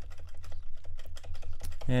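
A rapid, irregular run of computer keyboard clicks, keys pressed over and over to zoom the view in, over a steady low hum.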